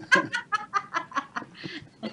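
A woman laughing: a quick run of short bursts of laughter, about ten in all, that trails off before the end.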